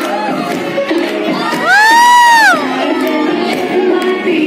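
Dance music with a steady beat and an audience cheering; about halfway through, one spectator close by lets out a loud, high-pitched whoop lasting about a second, rising, held, then falling away.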